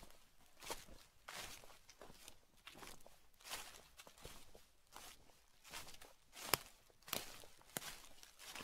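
Footsteps of two people walking slowly over dry fallen leaves: a faint crunching rustle with each step, about one and a half steps a second, with a sharper crack about six and a half seconds in.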